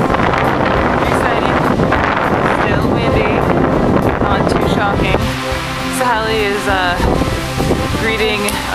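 Wind buffeting the microphone, heavy for about the first five seconds, over background music. From about five seconds in, a voice stands out clearly above the wind.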